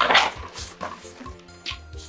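Soft background music with held, steady notes. A brief rustle of a paper envelope being handled comes at the very start.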